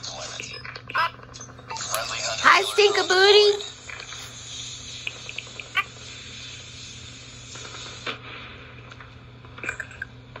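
Sound of a smartphone shooter game playing on the phone's speaker: scattered sharp clicks over a steady hiss, with a brief wavering voice-like sound about two and a half seconds in.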